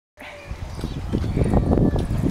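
Quick footsteps thudding on the inner surface of a large playground hamster wheel as it turns, over a low rumble, getting louder through the first second.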